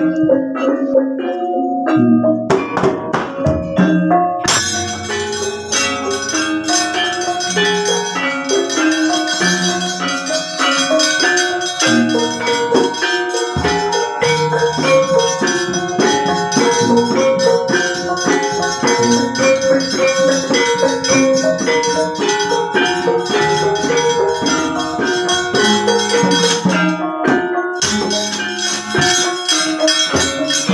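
Javanese gamelan playing: struck bronze metallophones and kendang drum in a busy pattern. From about four seconds in, a dense metallic rattling joins, the dalang's kecrek plates beaten rapidly; it breaks off briefly near the end and then resumes.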